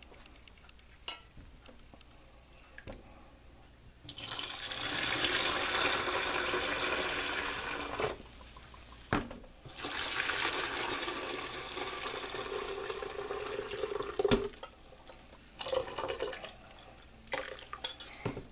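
Brewed tea poured from a stainless steel saucepan into plastic pitchers, in two pours of about four seconds each that start about four seconds in, with a short gap and a knock between them: half the tea into each of two pitchers.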